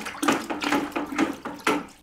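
Nutrient solution in a bucket sloshing as it is stirred briskly with a spoon, about four swishes a second, dying away near the end.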